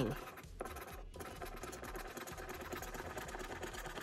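A lottery scratch-off ticket scraped with a small scratcher in quick back-and-forth strokes, rubbing off the latex coating. The scraping runs steadily, with brief breaks about half a second and a second in.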